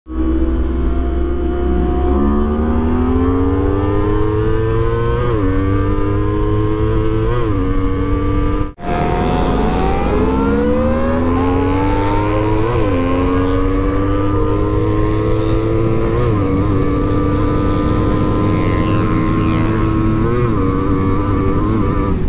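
A 250 cc sport motorcycle heard onboard, accelerating hard up through the gears. The engine pitch climbs steadily, then drops sharply at each upshift, several times over. Heavy wind rumble runs underneath, and the sound cuts out briefly about nine seconds in before a second full-throttle run begins.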